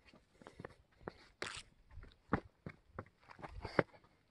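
Footsteps and rustling as someone moves through conifer branches onto rock: a run of irregular scuffs and knocks, with a louder brushing rustle about a second and a half in and a sharper knock near the end.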